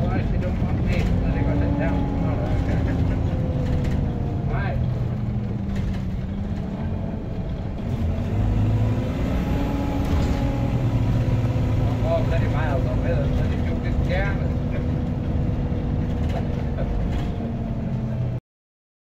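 Diesel bus engine and drivetrain heard from inside the passenger cabin while the bus drives along, a steady low rumble with the engine note climbing and dropping several times as it speeds up and eases off.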